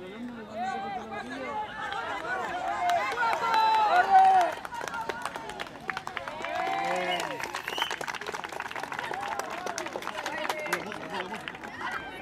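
Several voices shouting and calling out over one another, loudest about four seconds in, with scattered sharp clicks through the middle.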